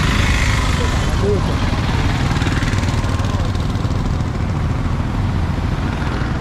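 Road traffic going past close by. An autorickshaw's small engine passes within the first second or so, over a steady low rumble of traffic.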